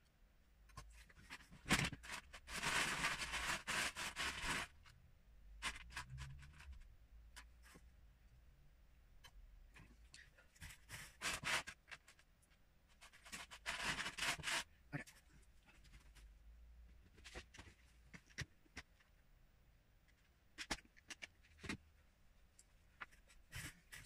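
Loose plastic Lego pieces clicking and rattling as they are handled and sorted, with several bursts of a second or two of rummaging through pieces between scattered single clicks.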